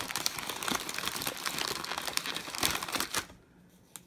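Printed plastic Oreo wrapper crinkling as hands handle and open it. The crinkling stops about three seconds in, and a single small click follows near the end.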